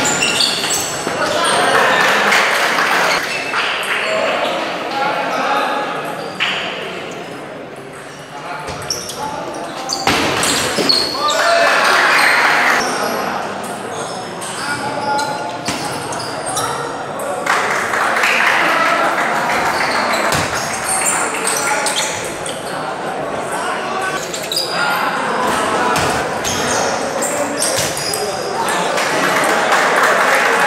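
Table tennis rallies: the ball clicking off bats and table again and again, over the chatter of many voices echoing in a large hall.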